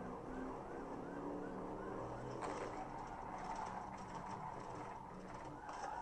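Police cruiser in pursuit, heard from inside on its dashcam: the engine pulls hard under acceleration while a siren yelps about three times a second. About halfway through, the siren settles to a steadier high tone.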